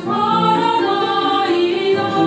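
Small mixed choir of young men's and women's voices singing a worship song together. A new phrase begins right at the start, with notes held about half a second each.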